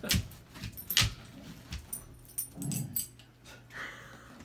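Basset hounds moving about on a bed: a few soft thumps and knocks, the sharpest about a second in, and a short low dog whine near the end.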